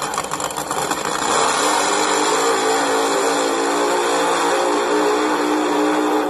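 Recorded drag-racing funny car engine sound played by a toy model of the 'Snake' Plymouth Barracuda, doing a burnout: rapid engine firing at first, then about a second and a half in a loud, steady high-revving note that holds.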